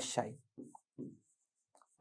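Faint pen strokes writing on an interactive whiteboard: a few short scratches about half a second to a second in, after a man's words trail off.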